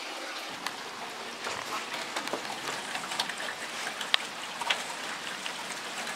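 Steady light rain, a soft even hiss with scattered sharper drop hits.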